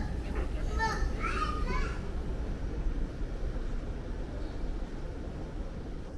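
A small child's voice: a few short, high, wavering cries or calls in the first two seconds, over a steady low rumble.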